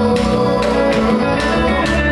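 Live band playing Afro-Dominican-rooted music: acoustic guitar, electric bass and congas with a drum kit, over a steady beat.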